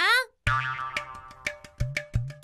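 A woman's last word, then a music cue starts about half a second in: sharp, regularly struck notes over held tones and a low held bass.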